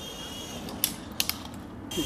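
Small electric radio-controlled helicopter on the grass: a few sharp clicks about a second in, then its high, steady motor whine starting up again near the end.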